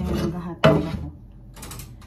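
Clicking and clattering of kitchen items being handled on a counter: a sharp knock about two-thirds of a second in, then a short rattle of clicks near the end.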